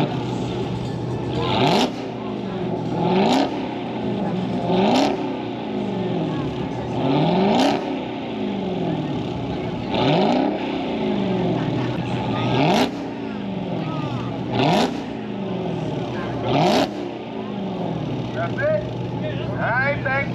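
A car engine revved hard about eight times, every two seconds or so. Each rev climbs quickly, then falls slowly back toward idle, with a sharp burst of noise at the top of each rev.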